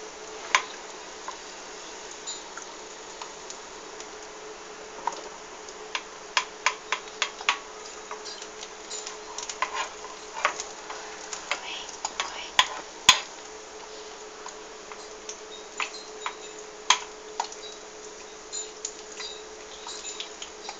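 An egg frying in oil in a non-stick pan, with a steady sizzle, and a wooden spoon knocking and scraping against the pan in irregular sharp clicks, busiest in the middle.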